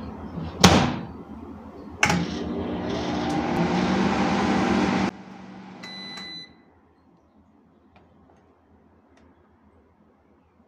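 Sharp RE-T1 microwave oven: its door shuts with two sharp knocks, a click about two seconds in, then the oven runs with a steady hum for about three seconds and cuts off. A short bell-like ding about six seconds in marks the mechanical timer returning to zero.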